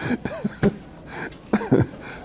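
A man laughing under his breath with a cough-like burst, mixed with rustling and a sharp thump as his clip-on lapel microphone is handled.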